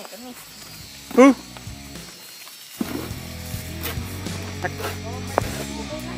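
A person laughs loudly about a second in. Then background music sets in just before the halfway point and plays steadily to the end, with a few brief voices over it.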